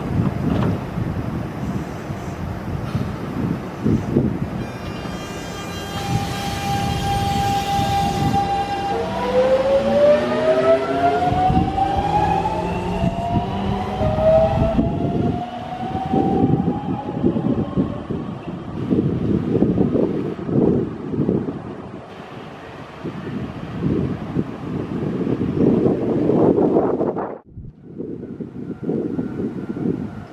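Electric commuter train pulling away: a set of steady electric tones, then a whine that rises in pitch as the train accelerates, the sound of its inverter-driven traction motors. After that comes the low, uneven rumble of the cars rolling over the track, which cuts off abruptly near the end.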